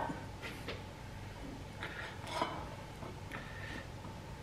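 Faint light clinks and rustles of handling food at a counter: a table knife touching a plate and corn husks being handled, over a low steady hum.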